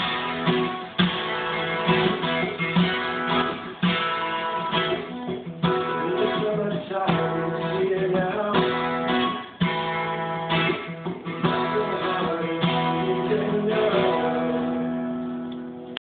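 Acoustic guitar strummed in chords, a song's closing passage, the last chord ringing out and fading near the end.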